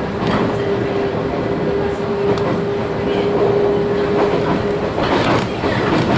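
JR 719 series electric train running, heard from inside the motor car: steady running noise with a held hum that stops about five seconds in, and a few knocks of the wheels near the end.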